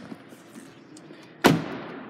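A car door of a 2018 Hyundai Tucson shutting with a single loud thud about one and a half seconds in, after faint handling noise.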